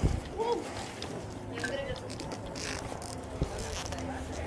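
Faint, distant voices over steady outdoor background noise, with a single light knock about three and a half seconds in.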